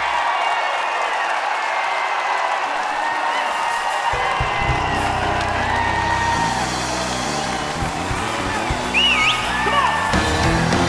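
Live Southern gospel quartet and band performing, with high vocal ad libs and whoops and the crowd cheering. The bass drops out for the first four seconds, then the full band comes back in.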